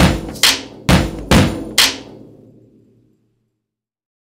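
Outro music sting of sharp percussive hits, about two a second, five in a row, then fading away to silence about three seconds in.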